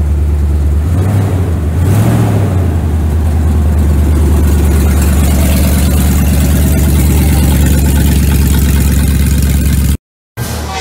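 A Toyota Tundra's engine idles loudly through an open exhaust, where its catalytic converters have been cut out. It is blipped up briefly twice in the first two seconds and then settles into a steady idle.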